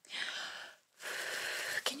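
Two long, airy breaths or puffs of air close to the microphone, each lasting most of a second, with a short gap between them.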